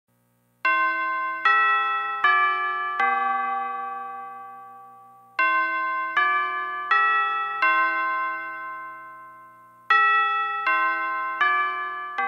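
School bell chime playing phrases of four bell notes. The last note of each phrase is left to ring and slowly fade, and a third phrase begins near the end.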